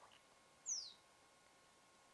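A single short bird call about two-thirds of a second in: a high chirp that falls in pitch.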